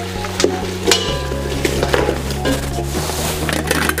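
Braised lamb trotters, chillies and spices tipped from a wok into a stainless steel pressure cooker, with repeated clinks and scrapes of metal on metal, over background music with steady low notes.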